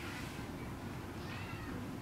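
A faint high-pitched animal-like call that rises and falls about a second and a half in, over a steady low background hum.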